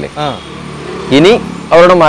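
A man's voice speaking in short phrases, one rising syllable in the middle, with a steady outdoor background hiss in the pauses.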